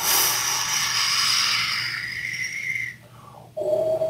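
A vocalised wind effect: a long breathy whoosh blown into the microphone for about three seconds, fading slightly. After a short gap it is followed near the end by a brief steady tone.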